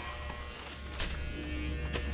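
Electric hair clippers buzzing steadily while buzzing a man's hair short, with a sharp click about a second in.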